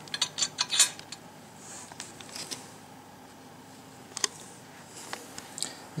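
Hands unwrapping and handling boat light-bar parts: paper packaging rustles, and light metal parts clink and click. A cluster of clicks comes in the first second, then a softer rustle, then a couple of single clicks near the end.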